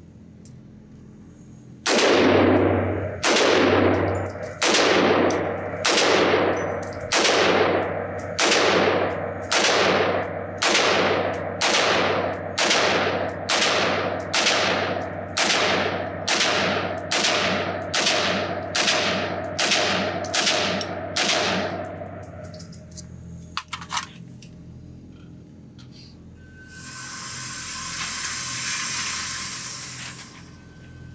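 American Resistance takedown AR-15 pistol with a 10.5-inch barrel firing 5.56 in about twenty slow, evenly paced single shots, roughly one a second. Each shot echoes around an indoor shooting range. After a few faint clicks, a steady whirring of the target carrier runs for a few seconds near the end.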